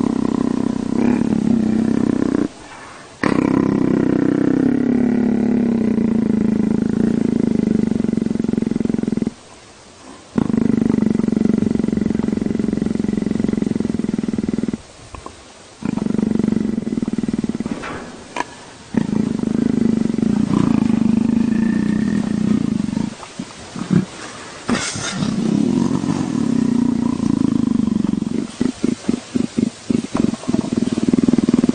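A spotted big cat rumbling steadily while its head is rubbed, a content sound. The rumble runs in stretches of several seconds, broken by short pauses, and turns into a quick pulsing rumble near the end.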